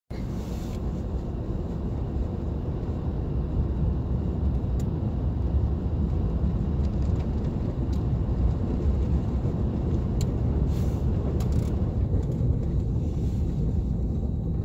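Inside a moving car on a snow-covered street: a steady low rumble of engine and tyres, with a few faint light ticks.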